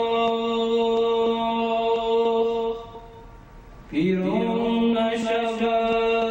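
A young man singing unaccompanied in the Persian vocal style: one long held note for almost three seconds, a short breath, then a new note that slides up about four seconds in and is held with small ornaments of pitch.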